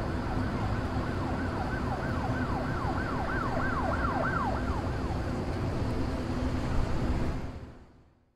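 A siren yelping in quick rising-and-falling sweeps, about two to three a second, growing louder and then stopping about four and a half seconds in, over a steady low rumble of traffic. The whole sound fades out near the end.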